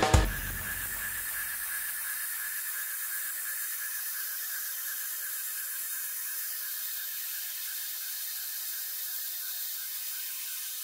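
Background music breaks off abruptly at the very start, leaving a steady hiss with a faint, constant high whine.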